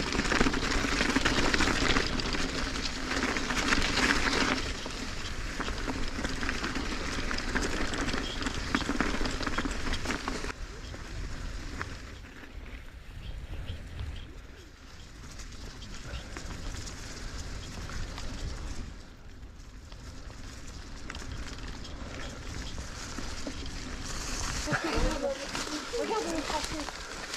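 Riding noise of a mountain bike on a rough, frozen dirt track: a steady rush of wind on the camera microphone and tyre rumble. It is loudest in the first few seconds and eases off in the middle.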